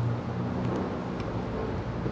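A steady low hum in the background, with two faint light clicks as the plastic terminal cover of a small 6-volt sealed lead-acid battery is taken off by hand.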